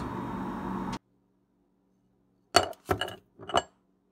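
Kitchenware clinking: three sharp, ringing clinks within about a second, while a pan of leftovers is handled. Before them, a steady background hum cuts off abruptly about a second in.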